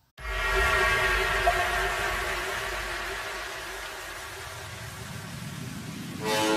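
Edited-in outro sound effect: a sustained chord over a deep low rumble, starting suddenly and slowly fading over several seconds.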